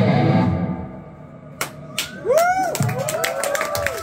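A live rock band's chord rings out and fades within the first second. Then an electric guitar plays swooping bent notes that rise and fall, over sharp drum and cymbal hits.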